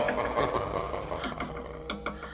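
Quiet stretch of a hard techno track: sparse sharp ticks and clicks over a fading synth texture, with a few more clicks near the end.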